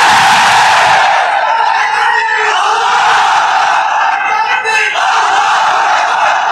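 A large congregation shouting together in loud, sustained unison, responding to the preacher over the mosque's amplified sound.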